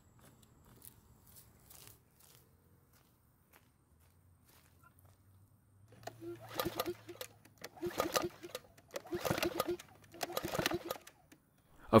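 A few faint presses of the primer bulb, then the recoil starter of a PowerSmart mower's engine pulled four times, about a second apart, the engine cranking over on each pull without ever firing: it will not start.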